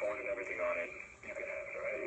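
Dialogue from the TV episode playing back through speakers: a person talking, sounding thin and band-limited.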